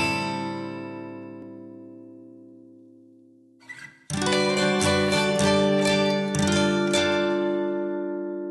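Guitar intro of an indie pop song: a strummed chord left ringing and fading for a few seconds, then a fresh run of rhythmic strummed chords about halfway through that ends on a held, ringing chord.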